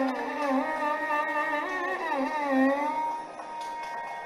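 Carnatic violin playing a melody full of sliding, bending ornaments, settling on one long held note about three seconds in.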